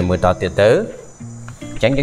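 A person's voice with music in the background; the voice falls silent about a second in, leaving a few steady held notes.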